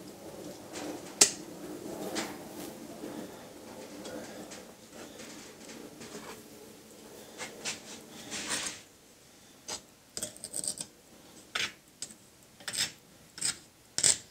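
Metal tools scraping and clicking in loose molding sand as a freshly cast bronze bell is dug out of its sand mold. There is a sharp click about a second in, then scattered short scrapes and taps through the second half.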